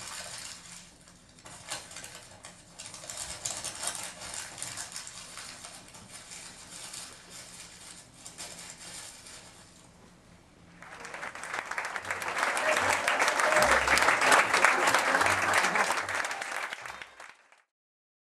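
Theatre audience applauding. It swells much louder about eleven seconds in, then cuts off suddenly near the end.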